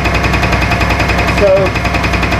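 Milling machine cutting a dovetail in a weld-filled steel tool block: a steady machine noise with a fast, even rattle from the cutter.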